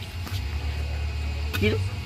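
A long-handled digging tool working the soil around cassava roots, heard as a few faint knocks over a steady low rumble on the microphone. A single short spoken word comes near the end.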